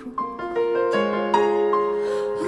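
Piano playing a slow melodic phrase, single notes struck one after another and left ringing.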